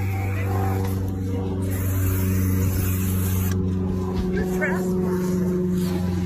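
An engine running steadily, a low even drone that grows slightly stronger about two seconds in.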